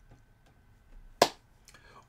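A single sharp click about a second in, over quiet room tone.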